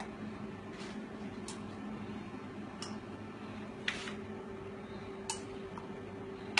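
A long metal bar spoon clinking lightly against a glass jug and glasses about five times, at irregular intervals and loudest near four seconds in, as slushy blended-ice cocktail mix is scooped and spooned. A steady low hum runs underneath.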